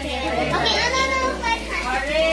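A group of adults and children talking and calling out over one another during a party game.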